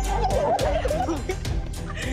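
A small group of people squealing and shouting excitedly with joy, several voices at once, over background music with a steady beat.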